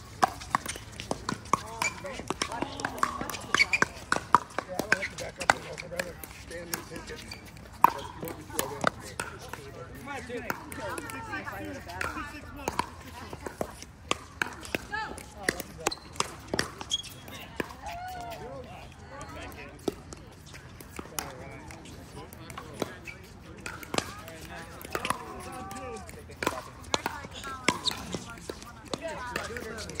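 Pickleball rally: repeated sharp pops of paddles striking the plastic ball, irregularly spaced, with people talking in the background.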